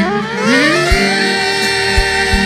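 Live manele band music: a lead melody line slides steeply up in pitch and settles into a long held note, with a couple of low drum thumps underneath.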